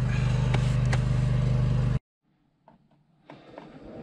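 An engine running steadily at idle, with a couple of light metal clinks over it. It cuts off abruptly about halfway through, leaving near silence broken by a few faint knocks and rustles.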